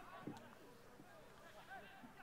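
Near silence: faint sound from the football pitch, with distant voices calling and a couple of soft thuds, one shortly after the start and one near the end.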